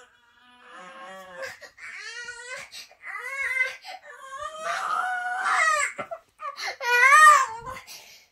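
A young boy crying in a series of rising-and-falling wails, about five of them, the loudest about seven seconds in.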